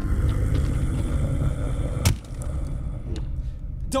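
Sound effect of a monster approaching: a low rumble with one heavy thud about two seconds in, after which the rumble eases off.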